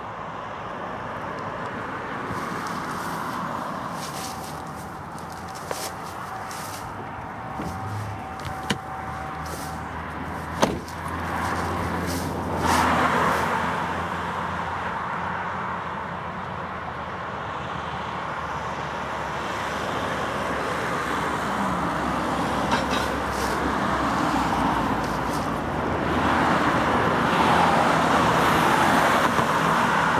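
Road traffic on a dual carriageway: a steady wash of car tyre and engine noise that swells and fades as vehicles pass, with a low engine hum in the middle stretch. There are a few sharp knocks about a third of the way through.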